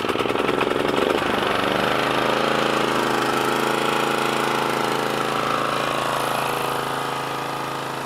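Exmark Commercial 30 walk-behind mower's single-cylinder engine running steadily, just pull-started on the first pull with the choke on. Its note shifts over the first couple of seconds, then settles to an even speed.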